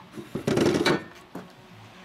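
Empty metal coffee cans clattering as one is set down among others in a wooden drawer, a burst of rattling about half a second in, then a single light knock.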